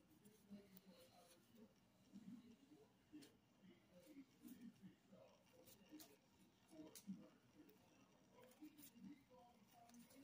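Near silence with faint rustling and a few light ticks of trading cards being slid and flipped through by hand.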